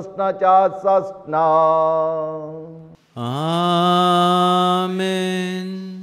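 A priest's voice chanting the closing words of a liturgical prayer on one pitch, then singing two long held notes, the second sliding up at its start.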